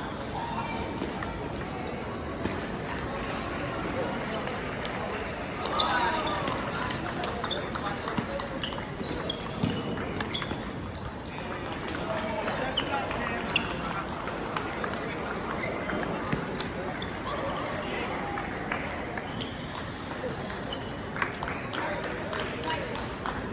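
Busy table tennis hall: scattered clicks of ping-pong balls striking tables and paddles from many matches, over a steady hubbub of voices.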